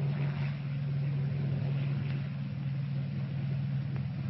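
A steady, even low drone with hiss from an old film soundtrack, running unchanged and engine-like.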